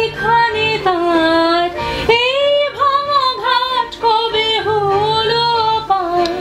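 A woman singing a slow melody, holding each note for about a second with a wavering vibrato and pausing briefly for breath about two seconds in.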